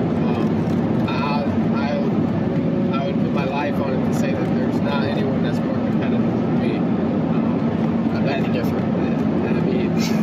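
A man talking over the steady road and engine noise of a moving car, heard inside the cabin.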